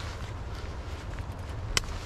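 Steady low wind rumble on the microphone with light rod-and-reel handling ticks, and one sharp click about three-quarters of the way through as a snagged fishing line is worked.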